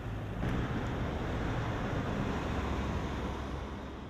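Street traffic: a vehicle driving past, its engine and tyre noise swelling about half a second in and easing off near the end.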